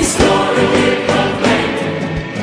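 Massed gospel choir singing a hymn with orchestral accompaniment, full sustained chords on the words "His glory be proclaimed, His righteousness remains."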